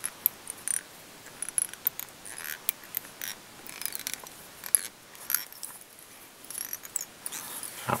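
Small scattered clicks and light scrapes from fly-tying handling: a metal bobbin holder and its tying thread being worked around the hook head, with one sharper click about halfway through.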